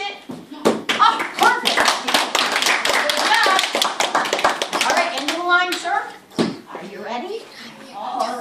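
A group of young children clapping their hands in a quick, uneven patter for a few seconds, with children's voices over it; the clapping fades out about two thirds of the way through.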